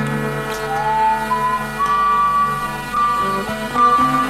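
Acoustic guitar playing sustained chords under a whistled melody of long held notes that slide from one pitch to the next.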